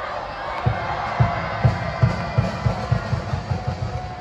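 A university cheering section's drum beats faster and faster, starting about a second in, under a crowd chanting a cheer for the batting side.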